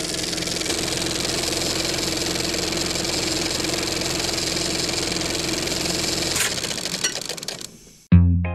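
Film projector sound effect: a steady mechanical whir with a fine rapid clatter over a held hum. It cuts off about six seconds in and fades away over the next second or so.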